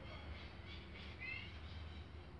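Faint bird chirping, with one brief rising chirp a little over a second in, over a low steady rumble.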